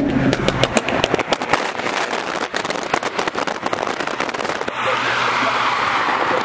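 Exhaust of a lowered BMW F30 3 Series popping and crackling as it drives alongside, a rapid irregular string of sharp pops. A rush of wind and road noise grows near the end.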